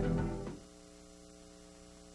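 A commercial's background music fades out in the first half second, leaving a steady, quiet electrical mains hum with a buzz of evenly spaced overtones.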